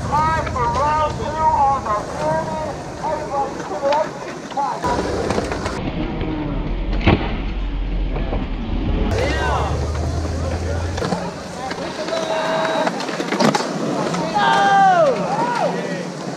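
Skateboard wheels rolling on concrete with a low rumble through the middle, and one sharp clack of the board about seven seconds in, amid people's voices talking and calling out.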